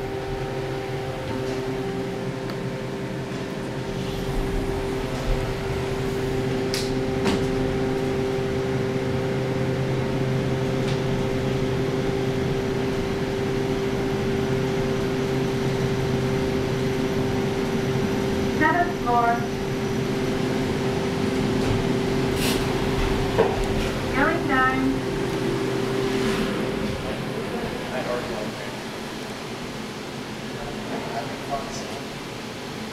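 KONE EcoDisc machine-room-less elevator car humming steadily as it travels, a drone of several fixed tones that stops a few seconds before the end, with a couple of faint clicks.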